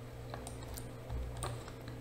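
A few faint, irregular clicks of computer input at a desk, over a low steady hum.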